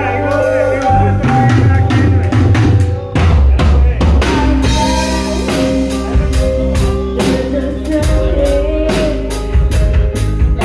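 Live rock band playing loud through a PA: drum kit, electric guitars, bass and keytar, with the drum strikes dense and regular in the second half.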